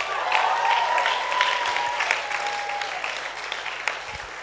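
Audience applauding the graduates, a dense patter of hand claps that dies down near the end. A long high note carries over the clapping through the first three seconds.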